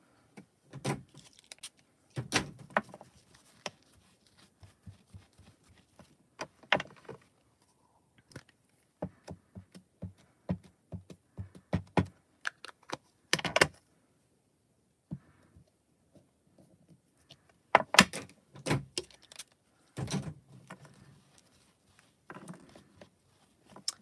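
Plastic ink-pad cases being opened and shut, and a silicone stamp being inked and pressed onto card on the desk: a scattered run of clicks, taps and knocks with short quiet gaps between.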